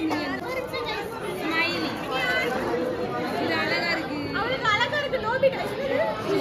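Chatter: several people talking at once, voices overlapping, in a room.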